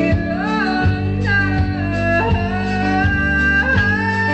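Live performance of a guitar-led song: steady plucked and strummed guitar chords with a higher melody line gliding over them.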